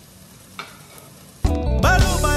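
Faint sizzle of mince frying in oil in a steel pot as a spoon scoops it out, with one light knock. About a second and a half in, loud music with singing suddenly starts.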